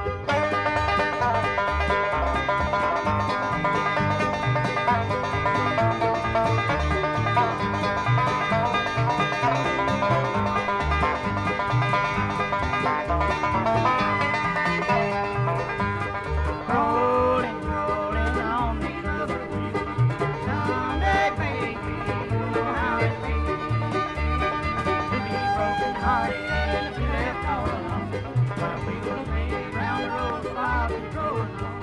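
Instrumental bluegrass music with picked banjo and guitar over a steady beat, with no singing; sliding melody notes come in about halfway through.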